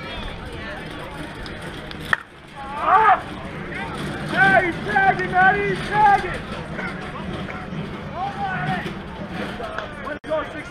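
A softball bat hitting a pitched ball once, a single sharp crack about two seconds in, followed by players' voices shouting and calling out loudly as the ball is put in play.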